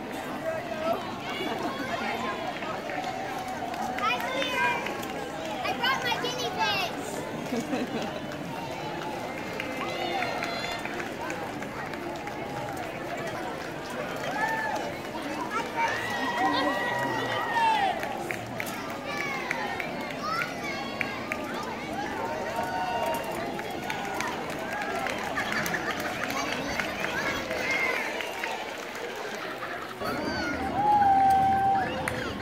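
Indistinct chatter of several people talking at once in an outdoor crowd, with no clear words.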